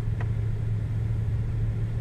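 A steady low hum with a rumble beneath it, like a running motor or engine, unchanging throughout, with one faint tick near the start.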